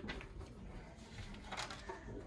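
Faint rustling of a sheet of paper being taken out of a wooden box, with a couple of short crisp rustles near the end.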